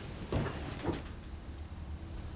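Two soft knocks about half a second apart, with rustling, as people get up from their seats and start to move off.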